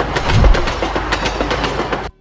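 Train sound effect: a rushing train with rapid rail clacks and a heavy low thump about half a second in, cutting off abruptly at the end.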